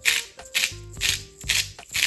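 Spice shaker shaken over food: a rhythmic rattle of granules, about two shakes a second, with background music underneath.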